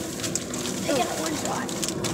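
Steady road and engine noise inside a moving car's cabin, with a boy's short murmured, hum-like voice sound about a second in.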